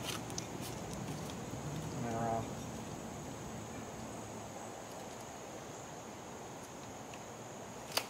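Quiet outdoor background with a steady high-pitched hiss throughout, a few faint clicks near the start and a brief voice about two seconds in.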